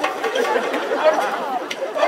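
Speech: several voices talking over one another, with no other distinct sound.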